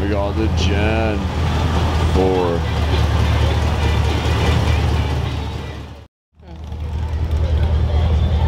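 A C4 Corvette's V8 running with a steady low rumble as the car rolls slowly past and pulls away, with voices over it near the start. The sound breaks off abruptly about six seconds in, then the rumble picks up again.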